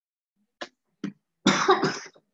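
A woman crying into a tissue makes two short sharp breathy sounds, then a louder, rough, cough-like burst near the end.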